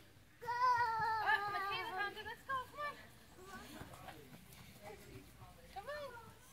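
A young child's voice: a long, high-pitched wavering squeal about half a second in, lasting about two seconds, followed by a few short, quieter vocal sounds.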